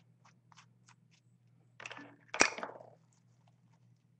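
Crafting materials handled by hand on a tabletop, over a faint steady low hum. A few faint ticks come first, then a rustle, then a single sharp crackle with a short rustling tail about two and a half seconds in.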